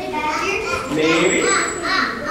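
Many children talking and calling out at once, an overlapping babble of young voices.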